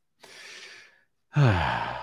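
A man breathes in audibly, then lets out a voiced sigh that falls in pitch, a sigh of exasperation.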